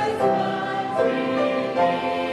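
Church congregation singing an invitation hymn together, holding each note for about half a second to a second.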